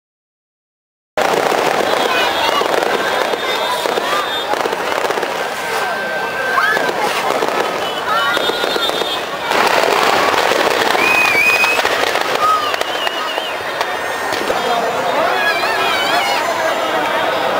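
Dense, continuous crackling and popping of firecrackers going off in a burning Ravan effigy, starting suddenly about a second in, with crowd voices and a few short whistling tones over it.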